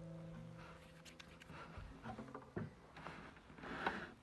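Acoustic guitar chord ringing out and fading over about the first second, followed by faint scattered knocks and rustles.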